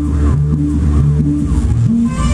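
Live band music: a deep bass line of short notes alternating between a low and a higher pitch in a steady rhythm, with faint gliding tones above it.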